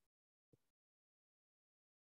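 Near silence: the call's audio is gated off, with only one faint, very short sound about half a second in.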